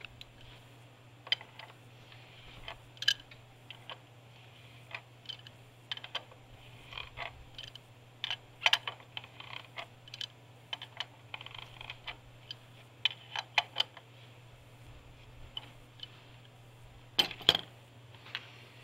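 Irregular light metallic clicks and clinks of a hand wrench working on the bypass oil filter housing's fittings, with a louder cluster of clicks near the end, over a steady low hum.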